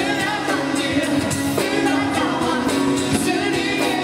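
A live pop band playing a song, with a singer's voice over drums and acoustic guitar.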